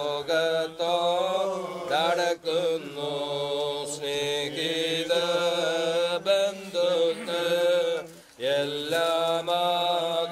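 Male voices chanting a Christian funeral hymn from the service book, holding long notes in a slow, even melody, with a short pause for breath about two seconds in and again near the eight-second mark.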